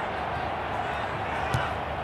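Pitch-side sound of a football match: a steady bed of background noise with one sharp thud of a football being kicked about one and a half seconds in.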